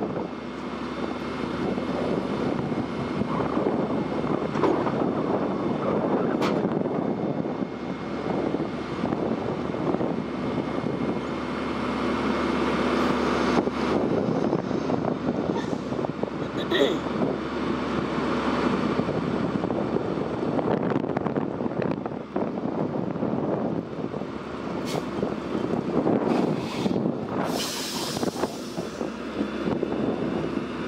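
A heavy rotator wrecker's diesel engine running steadily under load, powering the boom hydraulics while the boom holds a forklift on its winch lines. A few short clicks are heard, and a burst of hiss comes near the end.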